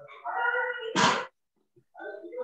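A dog whining with a high-pitched sustained cry, then a short harsh bark-like sound about a second in.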